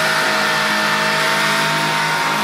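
Heavy metal song at a break: drums and bass drop out, leaving a sustained, noisy wall of distorted sound with a few held tones.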